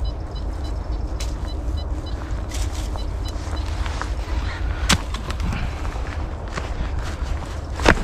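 Footsteps and a metal detector's coil moving through dry leaf litter and twigs: scattered rustles and small snaps over a steady low rumble of wind on the microphone. There is one sharper snap about five seconds in, and a few faint high pips in the first second and a half.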